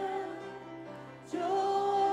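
Mixed church choir singing a hymn: a held chord fades away, then the voices come back in together on a new long held note about a second and a half in.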